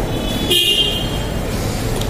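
A brief high-pitched toot, like a horn, about half a second in, over a steady low background rumble.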